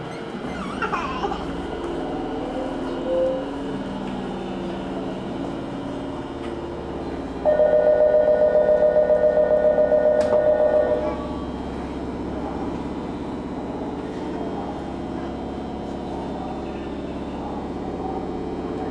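A steady low hum from a train standing at a platform. About seven and a half seconds in, a loud, rapidly pulsing departure bell rings for about three and a half seconds, the signal that the doors are about to close.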